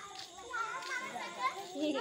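Young children's voices, high-pitched chatter and calls.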